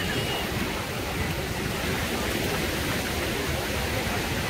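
Steady wash of small waves breaking along a sandy shore: an even, unbroken noise with no distinct events.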